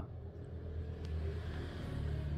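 A steady low hum with a faint click about a second in.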